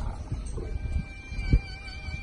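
Wind noise buffeting the microphone over open water, an irregular low rumble, with a faint steady high tone coming in about half a second in.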